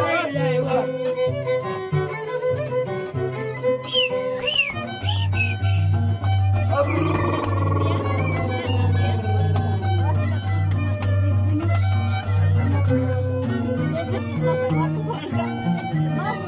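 Andean harp and violin playing a carnival tune: the harp plucks a steady, repeating bass line that gets louder about five seconds in, under the violin melody. People's voices and calls carry over the music.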